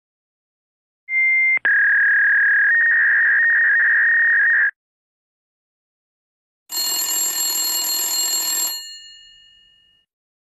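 Telephone ringing sound effects. First a steady, high electronic ring lasting about three and a half seconds, with a short click near its start. After a pause comes a brighter bell-like ring of about two seconds that fades out.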